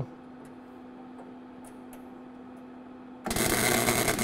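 A steady low hum with a few faint ticks, then about three seconds in a MIG welder's arc strikes and burns loudly as a short weld goes onto the car's sheet-metal bracket, filling one of its holes.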